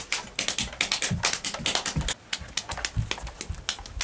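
Coconut shells knocked together to imitate horse hooves: a quick, irregular clip-clop of sharp clicks, several a second.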